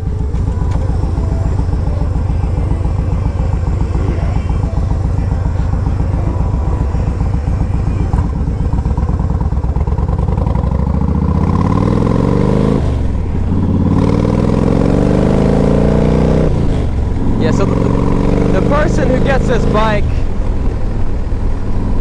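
A 2012 Yamaha Road Star Silverado's 1,700 cc air-cooled V-twin runs steadily under way, then pulls harder, its note rising through the gears. The note drops briefly twice, a few seconds apart, at the gear changes.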